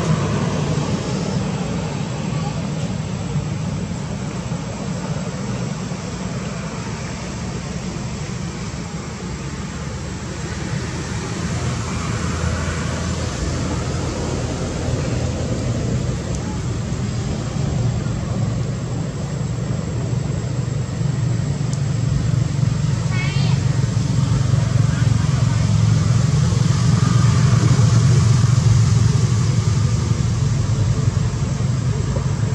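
Steady outdoor background noise: a low rumble like road traffic with indistinct voices, and a brief high chirping trill about three-quarters of the way through.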